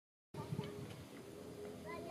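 Faint background voices with a steady thin hum, a few low bumps just after the sound begins, and a few short high chirps near the end.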